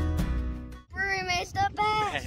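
Background acoustic guitar music stops just under a second in. A child's voice follows, singing out a few long held notes.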